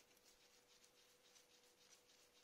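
Near silence: faint room tone with a faint steady hum and a few faint small ticks.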